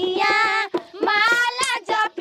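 A high-pitched voice singing a devotional folk song in long, wavering held notes, with short breaks between phrases.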